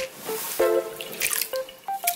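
Water splashing and dripping as shredded raw potato is swished by hand in a glass bowl of water to rinse out its starch, over light plucked background music.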